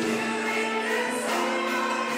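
Mixed choir singing a Turkish art music song, accompanied by a small ensemble of traditional and Western instruments, with a frame drum.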